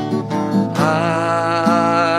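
Acoustic guitar strummed in chords, with a man's singing voice coming in about a second in on a long held note over the strumming.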